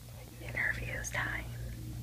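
A person whispering briefly, a few hushed syllables about half a second in, over a steady low room hum.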